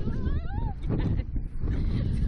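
A rider's high-pitched squeal that rises and wavers in pitch for about half a second at the start, over wind rushing on the ride-mounted microphone as the slingshot capsule flies through the air.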